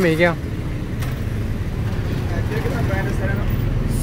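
Street traffic: a steady low rumble of motorcycle and other vehicle engines, with faint voices in the background.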